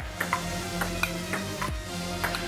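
Table tennis ball clicking off bats and table in a quick rally, several sharp ticks over steady background music.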